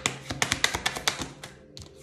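A deck of tarot cards being shuffled by hand: a rapid run of papery clicks lasts a little over a second, then a few single taps near the end.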